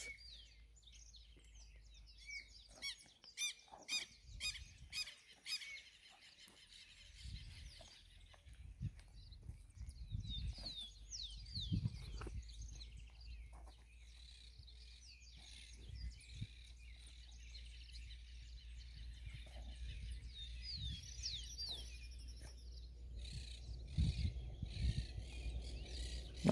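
Faint outdoor birdsong: many short chirps and quick falling whistles from several birds, with occasional low thuds and rumbles.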